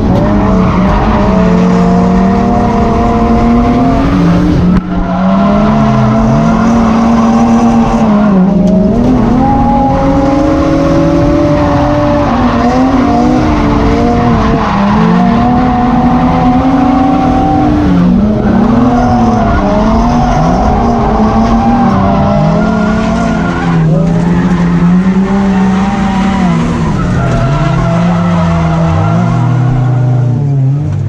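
Drift car's engine heard from inside the cabin, revving up and down continuously through a drift run, with tyre squeal and skidding noise under it. The revs dip briefly about five seconds in.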